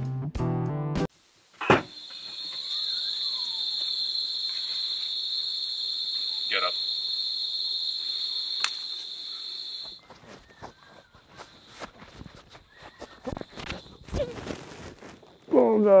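Guitar music cuts off about a second in, followed by a sharp knock. Then a steady, high-pitched insect drone, like cicadas or crickets, runs until it stops abruptly a little past halfway. Scattered light clicks and rustles follow, and a laugh comes at the end.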